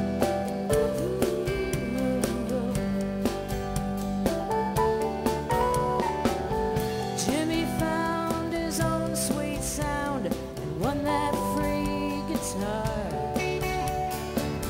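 Live band playing an instrumental passage: acoustic and electric guitars, electric bass, drums and keyboard, with a melody line gliding and bending between notes over a steady drum beat.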